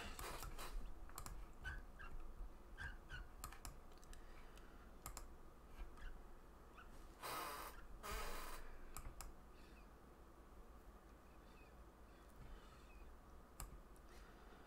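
Faint, scattered clicks of a computer mouse and keyboard at a desk, irregular and a few per second at most, with two brief louder rushes of noise a little past halfway.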